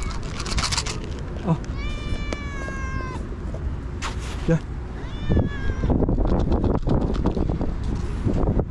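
Hungry grey tabby stray cat meowing for food: one long meow about two seconds in that drops in pitch at its end, then a shorter meow a little past five seconds, among brief scuffing noises.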